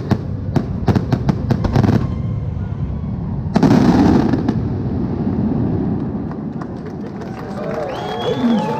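Aerial fireworks: a rapid string of sharp bangs for about two seconds, then one big loud burst about three and a half seconds in, trailing off into a low rumble.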